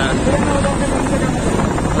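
Steady, loud rumble of wind on the microphone and road noise from a motorbike moving through traffic.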